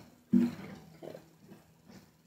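Acoustic guitar bumped while being lifted into playing position: a sudden knock sets the open steel strings ringing, and the low notes sustain and slowly fade.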